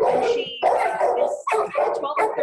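Kennelled shelter dog barking over and over, several short barks in quick succession.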